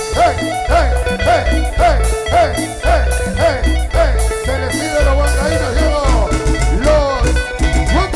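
A live band plays Latin dance music with a drum kit and guitars. It has a strong, regular bass beat and a lead melody that bends up and down in pitch.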